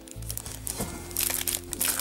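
Cellophane packaging crinkling as craft packets are handled and pulled from a box, growing louder and denser about halfway through, over soft background music.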